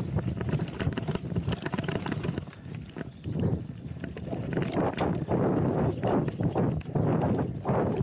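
Mountain bike descending a dirt trail: tyres rolling over dirt and roots with the chain and frame clattering over the bumps, against a low wind rumble on the microphone. In the second half a rushing noise swells and fades in quick regular pulses, a bit under twice a second.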